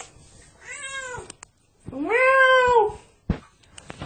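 A domestic cat meowing twice: a fainter meow about a second in, then a louder, longer one that rises and falls in pitch. A brief click follows near the end.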